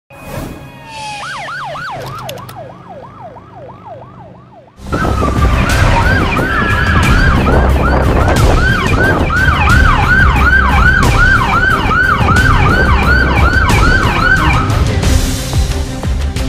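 Ambulance siren in fast yelp mode, its pitch sweeping up and down about three times a second. It is fainter at first and much louder from about five seconds in, with a low rumble beneath, and it stops shortly before the end.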